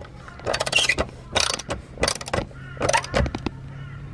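Ratchet socket wrench clicking in four short bursts about a second apart as a bolt on an aluminium awning arm is wound tight.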